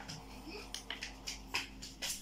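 A run of light, sharp clicks, about seven or eight in two seconds, from a hand working the mode control on the back of a small green-and-red laser stage light, over a faint steady hum.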